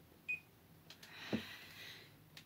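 A countdown timer alarm gives one last short, high beep just after the start, the sign that the six minutes are up. It is followed by faint rustling of movement.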